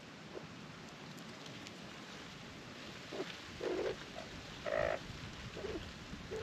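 Australian magpies making a few short, low calls close by: several brief calls in the second half, the loudest two about a second apart, over a steady background hiss.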